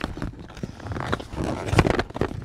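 Packaging being handled during an unboxing: irregular rustling, tapping and knocks of a cardboard box and plastic wrapping, loudest near the end.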